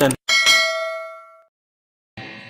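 A single bell-like ding sound effect marking the click of a subscribe button: struck once about a quarter second in, its several clear tones ringing out and fading over about a second.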